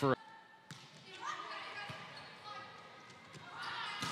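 Indoor sports-hall ambience between rallies of a volleyball match: faint shouts of players and crowd echoing in the hall, with two sharp knocks, about a second apart, like a ball hitting the floor. The noise of the crowd swells near the end.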